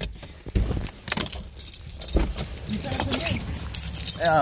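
Handling noise from a phone being moved against clothing: irregular rubbing, scraping and knocking with small clinks. Faint voices come in about three seconds in.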